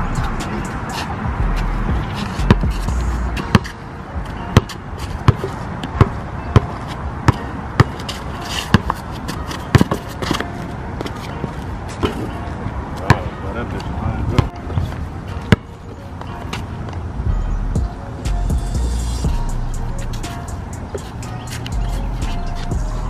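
A basketball dribbled on an outdoor asphalt court: a run of sharp, regular bounces, about one every two-thirds of a second, that stops near the middle, with background music underneath.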